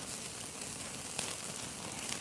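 Steady hiss of steak sizzling over a small open wood campfire, with a few faint crackles from the fire.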